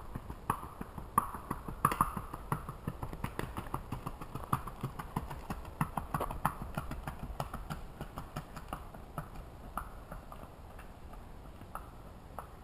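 Hoofbeats of a Missouri Fox Trotter filly gaiting on a paved road, a quick, even run of clip-clops. They grow fainter near the end as the horse moves away.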